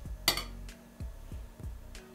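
A metal teaspoon clinks sharply once, with a few fainter taps, as chopped plum filling is spooned onto a round of dough. Soft background music with low bass notes plays underneath.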